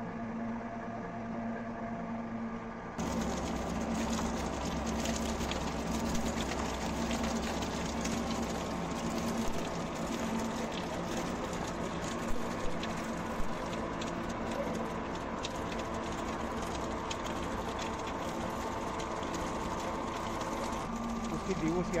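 A screw-type cold press oil expeller running steadily while pressing ajwain (carom seed), a constant machine hum with a couple of sharp clicks about halfway through.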